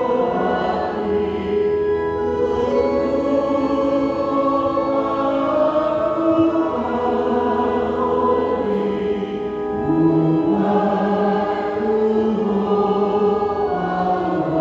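Organ playing a hymn tune in slow, sustained chords, the harmony moving every second or two.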